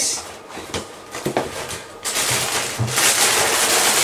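A couple of light knocks, then from about halfway a steady, crinkly rustle from the Rice Krispies cereal packet being handled.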